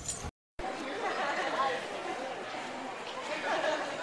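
Indistinct chatter of many voices in a large, echoing room, after a brief cut to silence just after the start.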